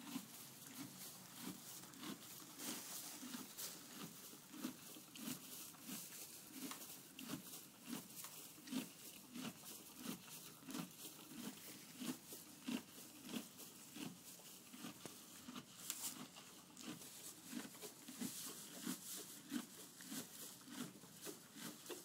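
Horse munching hay: a steady rhythm of chews, somewhat under two a second, with the dry crunch and rustle of hay.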